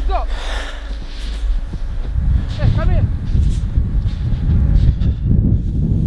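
Wind buffeting the camera microphone as a loud low rumble, with a few breathy swishes and a short run of pitched calls about three seconds in.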